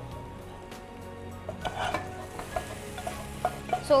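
A spatula scraping and tapping food out of a frying pan into a pressure cooker, where it sizzles in the hot pot. Small scrapes and clicks come through from about halfway through, over faint background music.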